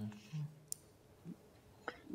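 A quiet pause on a video call: a brief low voice murmur that stops about half a second in, then a single sharp click, and a fainter click just before speech resumes.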